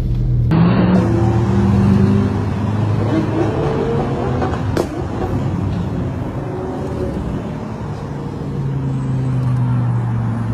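Several supercar engines running at low speed as a line of cars drives past, with the revs rising in the first few seconds. A single sharp click comes about five seconds in, and an engine grows louder and steadier near the end.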